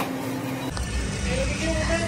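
Steady store room tone with a low hum. About two-thirds of a second in it switches abruptly to outdoor ambience, a low rumble of wind and traffic, with a voice starting near the end.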